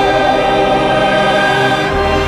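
Loud choral music from the trailer score: a choir holding one sustained chord.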